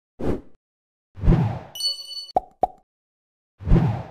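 Animated-graphics sound effects: three short deep thuds, a brief bright chime about two seconds in, then two quick sharp pops.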